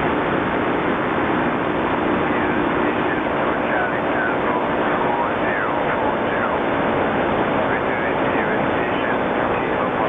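Shortwave radio receiver hissing with band static after the transmit call ends, with faint, warbling voices of distant stations coming through the noise from about three seconds in.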